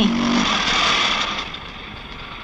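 Auto-rickshaw engine running, dying down about a second and a half in.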